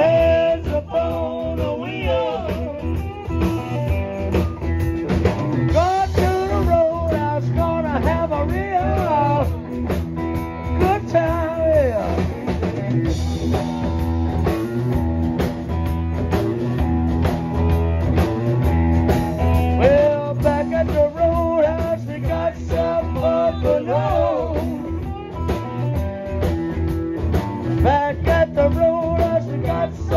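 Live blues-rock band playing: electric guitars with bending lead lines over a steady bass line and drum kit.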